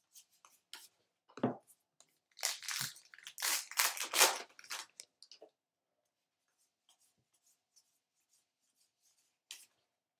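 Baseball trading cards handled on a table: a dull thump about a second and a half in, then about three seconds of rustling and sliding of card stock as a stack is sorted, then quiet.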